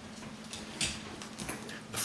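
Quiet room with a low steady hum and a few faint, brief rustles, two of them about a second apart.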